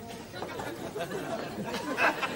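Indistinct chatter of many people talking at once, no single voice standing out, growing louder toward the end.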